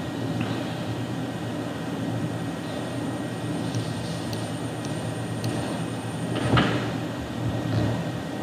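Steady low hum of background room noise, with a faint high whine in the middle and a short soft noise about six and a half seconds in.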